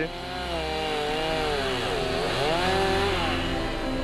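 Several petrol chainsaws running and cutting into logs, their engine pitch wavering under load, dipping about halfway through and rising again.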